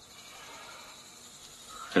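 Faint steady background hiss, the quiet room tone of a film soundtrack, with no distinct event.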